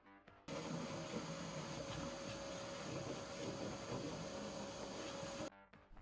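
Vacuum cleaner running steadily with a constant whine, its hose sucking up drilling debris around a steel hatch frame. It starts about half a second in and cuts off suddenly near the end, with quiet background music under it.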